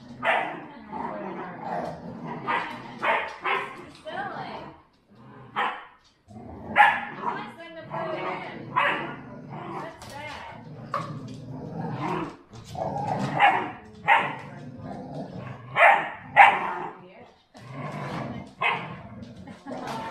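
Two pit bulls play-fighting, growling and barking in irregular bursts a second or so apart, with a brief lull about five seconds in.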